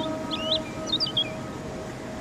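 Bird chirps: a few quick clusters of short, twisting high chirps in the first second and a half, over the fading tail of a long held musical note.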